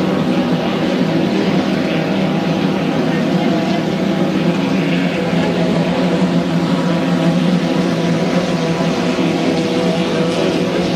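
A 1.5-litre class racing hydroplane's engine running flat out at high, steady revs as the boat speeds across the water, with a hiss of spray over it.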